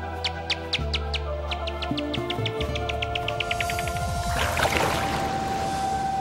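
Daubenton's bat echolocation calls made audible as short falling chirps, coming faster and faster into a rapid buzz as the bat homes in on prey. About four and a half seconds in, a splash follows as it snatches at the water surface. Background music plays underneath.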